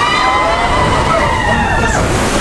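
Several voices in long, overlapping rising-and-falling 'whoo' wails over steady rushing water on the flume ride, typical of riders as the boat heads down the drop. A louder gush of water comes in at the very end.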